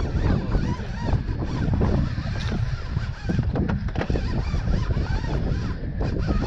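Wind buffeting the microphone on an open boat, a steady low rumble, with irregular higher-pitched sounds over it.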